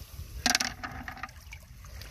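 A quick clatter of beach stones knocking together, about half a second in, as a hand digs into a bucket of wet rocks; after it only a low background wash.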